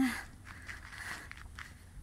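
Footsteps on a dry, stony dirt trail, with faint irregular scuffs and clicks of each step.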